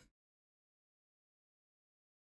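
Near silence: the sound drops out completely, with no audible sound at all.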